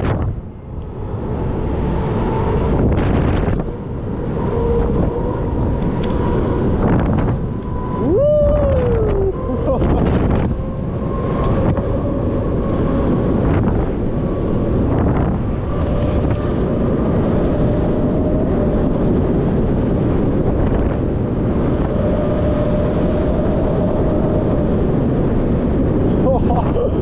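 Wind rushing over a chest-mounted action camera's microphone as it swings through the air on a booster (propeller) thrill ride, with a steady whine running underneath. About eight seconds in, a person gives one short cry that rises and then falls in pitch.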